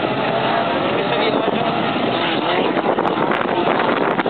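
Autocross race car engines running hard on a dirt track, their pitch wavering up and down as the drivers work the throttle through the bends.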